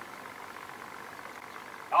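Faint, steady background noise: a low, even hum and hiss.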